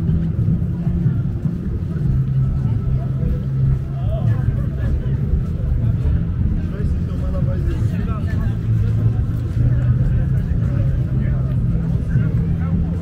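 Pedestrian shopping street ambience: passersby talking, over a steady low rumble.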